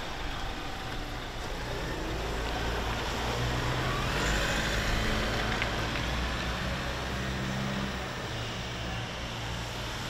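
A pickup truck's engine running at low speed as it drives slowly past and away, a steady low hum that swells slightly near the middle and then eases.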